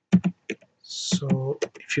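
A few scattered keystrokes on a computer keyboard, typing code.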